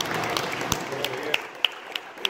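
Scattered applause from spectators, separate hand claps over a murmur of crowd chatter, thinning out to a few lone claps in the second half.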